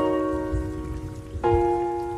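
Background piano music: slow chords, each struck and left to fade, with a new chord about one and a half seconds in and a low noise underneath.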